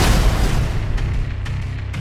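A deep cinematic boom hits at the title card and its low rumble slowly dies away under the trailer music.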